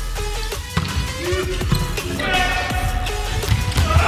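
Background music with a steady beat over a volleyball rally, with sharp slaps of the ball being played and court impacts throughout.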